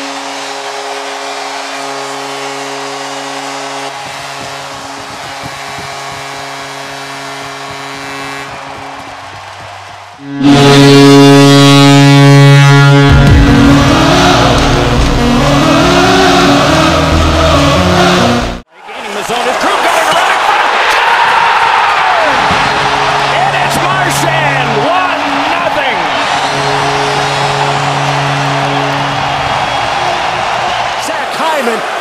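A hockey arena crowd cheering over a steady held horn tone that fades about ten seconds in. Then about eight seconds of loud music, a sudden cut, and another arena crowd roaring a goal, with a goal horn sounding twice near the end.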